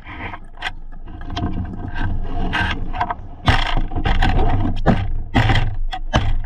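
Close scrapes, rubs and knocks of the diver's gear against the action camera, over a steady rumbling water noise. The knocks grow louder and come closer together after about three and a half seconds.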